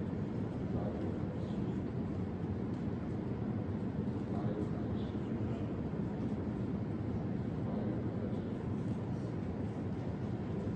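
Steady low rumble of room tone with no distinct events.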